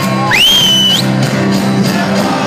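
A band playing live, with acoustic guitar and cello, loud and steady. About half a second in, a high whoop rises sharply, holds briefly and breaks off.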